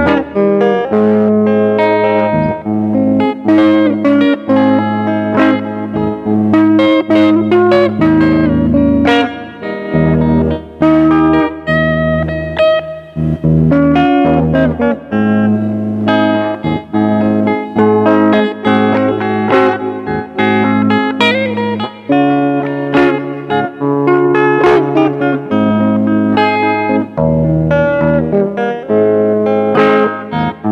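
Electric guitar played fingerstyle, picking a melody over held bass notes.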